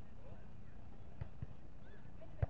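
Volleyball being struck during a beach volleyball rally: two short knocks, a fraction of a second apart, a little over a second in.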